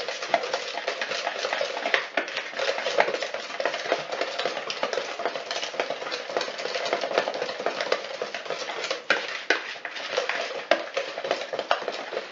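A wire whisk beating thick chocolate batter in a plastic mixing bowl, with rapid, continuous clicking and scraping of the wires against the bowl as milk is worked in to thin the batter.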